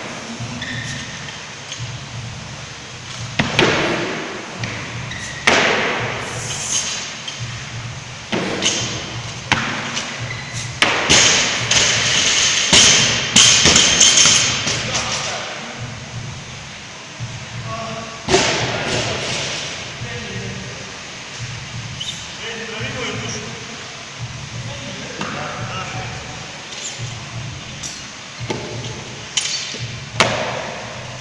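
Loaded barbells with bumper plates dropped onto the gym floor after squat cleans, one heavy thud every few seconds, each ringing on in the large hall. Around the middle the drops come close together.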